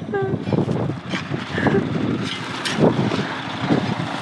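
A 4x4 vehicle driving slowly over a rough dirt track, its engine running under a steady rumble with irregular knocks and rattles from the bumps.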